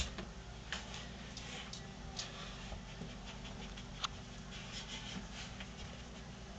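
Tamanduas scuffling in play, their claws and bodies making scattered sharp clicks and scratches, with a sharper click about four seconds in.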